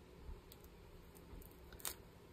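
Faint small clicks and rustles as a metal bulb pin is pushed through scraps of lace by hand, with the sharpest click near the end.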